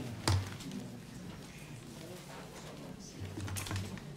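Low murmur of people chatting in a hall, with scattered knocks and clatter as stage furniture is moved about; a sharp knock about a third of a second in is the loudest sound, and a dull low thudding follows near the end.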